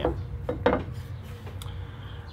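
Glass beer bottle and beer glass handled on a wooden table: two short knocks as the bottle is set down and the glass is picked up, the first about half a second in and the second, sharper, about a second and a half in.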